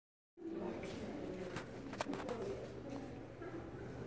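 Gallery room ambience: faint, indistinct voices of other people talking, with a few sharp clicks about a second and two seconds in.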